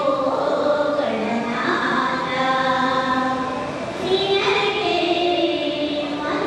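A group of women singing a prayer song together in unison, holding long notes and sliding between pitches, with short breaths between phrases.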